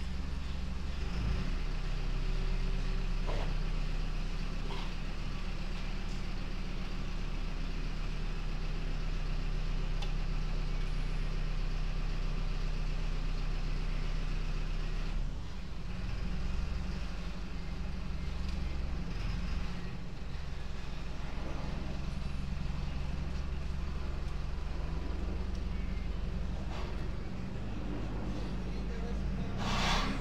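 A motor running with a steady low drone, with a few light knocks.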